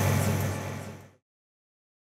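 Steady machinery and ventilation hum of a space station module, with a strong low drone and an airy hiss, fading out about a second in to silence.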